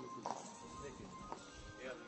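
Faint street-market background: voices chattering and music playing, with a few sharp knocks.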